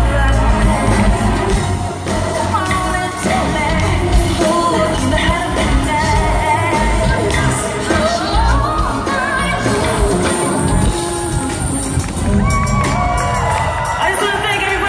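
Live pop music from an arena concert: a female lead singer with a live band of drums, bass, guitar and keyboards, loud and continuous, heard from among the audience.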